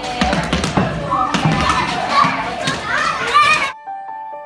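Children shouting and playing while large exercise balls are thrown and land with thuds. Near the end it cuts off suddenly, and a few sustained piano notes begin.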